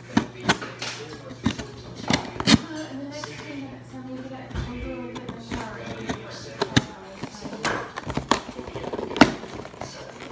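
A blade scraping and jabbing at the packing tape on a cardboard box, a string of sharp scratches and knocks at irregular intervals, as the box is being cut open.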